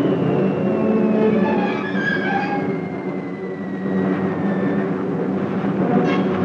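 Steady drone of bomber aircraft engines, mixed with orchestral film score; a thin high tone slowly falls in pitch through the first five seconds.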